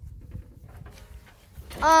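Mostly a faint low rumble with no engine running, then a child's voice saying a drawn-out "um" near the end.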